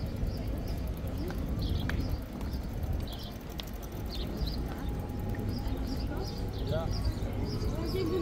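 Busy pedestrian-street ambience: footsteps on paving stones and the murmur of passers-by talking over a steady low rumble.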